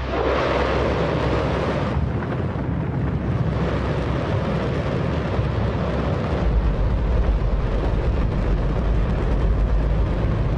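Space Shuttle main engine, burning liquid hydrogen and oxygen, firing on a test stand: a loud, steady rocket roar heard across open ground. The rumble grows heavier and deeper about six and a half seconds in.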